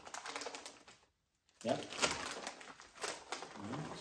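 Foil snack bag of cheese balls crinkling as it is held open and tipped, a dense run of small crackles. It is broken by a half-second silence just after a second in. Near the end, small corn puffs rattle out of the bag into a foam tray.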